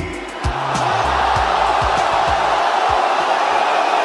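A large crowd cheering, a steady wall of voices, over the bass notes and kick drum of a hip-hop beat; the beat stops about three seconds in while the cheering carries on.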